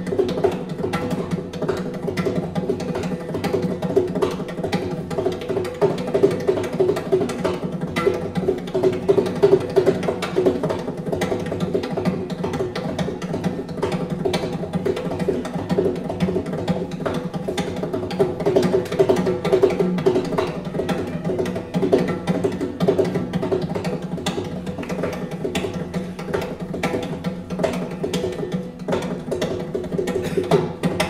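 Mridangam, the South Indian double-headed barrel drum, played solo with fast, dense strokes of both hands. The drum's tuned head gives a steady pitched ring under the rapid rhythm.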